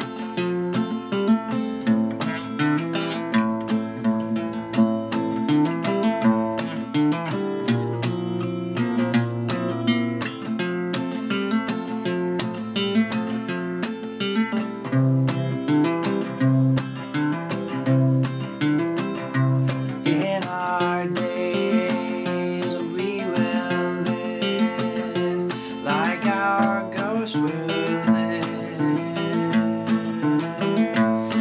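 Solo steel-string acoustic guitar with a capo, played steadily as the instrumental intro of a song.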